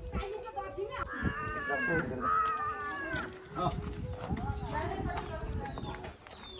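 People talking, with two high, drawn-out calls that fall in pitch, the first a little after one second in and the second just after two seconds in.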